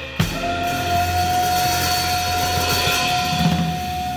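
Drum kit playing with the band. A hard hit with a cymbal crash comes just after the start, then a long steady held note rings out over the cymbal wash and a sustained low bass note, with a few scattered drum strokes.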